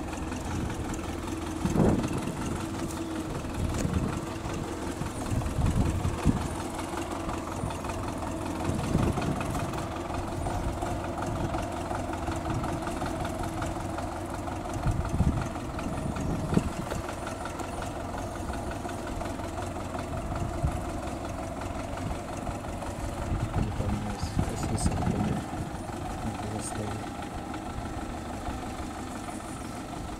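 Diesel engine of a wheeled front-loader tractor running steadily at low speed, carrying a load over rough, rutted ground, with several low thumps along the way.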